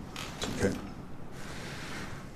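A chair creaking and shifting as a man rises from it, with a brief rustling noise through the second half.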